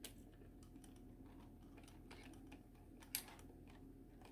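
Faint clicks and taps of a plastic 1/35 scale model kit being handled and turned over in the hands, with one sharper knock about three seconds in, over a low steady room hum.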